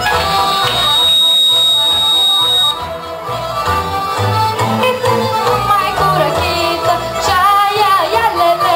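Romanian folk dance music with a steady beat. A thin high steady tone sounds through the first two and a half seconds, and a girl's voice comes in singing with vibrato near the end.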